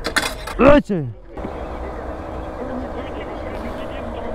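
A short spoken exclamation, then about a second and a half in a fuel dispenser's pump motor starts up as the SP98 nozzle is lifted, running with a steady hum.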